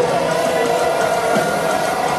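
A metalcore band playing loud live music, with a sustained note held for the first second and a half, heard from inside the crowd.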